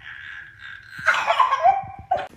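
A toddler crying: a drawn-out wail, then a louder, rougher cry starting about a second in.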